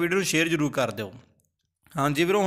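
A man's narrating voice speaking for about the first second, then a brief stretch of dead silence before speech starts again at the very end.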